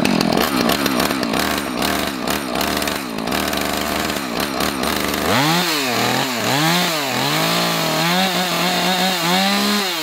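Husqvarna two-stroke chainsaw idling, then from about halfway revved up and down several times and held at high revs near the end, its freshly tightened chain spinning freely in the air without cutting.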